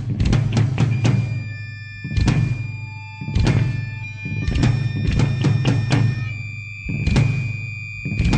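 Hardcore band's instrumental song intro: heavy drum hits and crashing cymbals in stop-start groups over a low, sustained drone. A steady high ringing tone comes in about a second in and holds under the hits.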